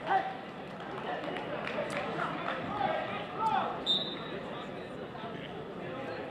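Murmur of many overlapping voices from a gym crowd during a wrestling match. About four seconds in comes a short referee's whistle blast, restarting the bout after a stalemate.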